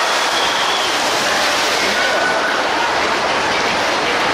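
Loud, steady rush of splashing water thrown up by a killer whale's splash in the show pool, with faint shrieks and cheers from the audience in it.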